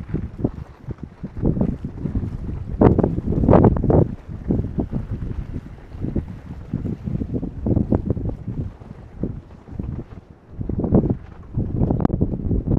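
Wind buffeting the microphone in uneven gusts, a low noise that surges and fades, strongest about three to four seconds in.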